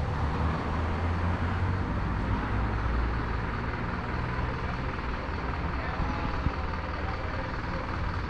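Steady outdoor background noise with a low rumble, heavier in the first half and easing off after about five seconds.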